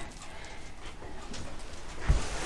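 Faint soft scraping of a plastic notched spreader being drawn through wet epoxy resin on a tabletop, with low room noise.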